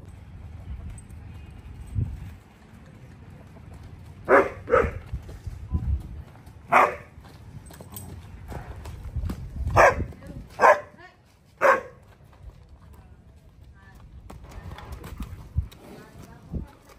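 A dog barks about six times in short, sharp single barks, from a few seconds in until a few seconds before the end. Low thuds of a horse's hooves on dirt come under the barks as the horse is led across the yard.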